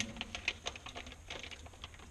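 A pen drawing on paper laid on a tabletop: an irregular run of light clicks and scratches as the pen is traced around a small round object to curve a corner of the pattern.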